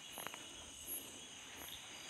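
Faint insect chirring in the background: a steady high trill with a higher chirp repeating about once a second. A couple of faint clicks come just after the start.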